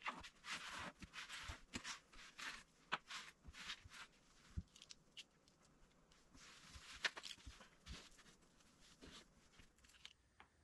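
Faint, quick swishes of a cloth wiping a wooden cabinet shelf, thick during the first four seconds, then thinning to scattered light rustles and a few small knocks.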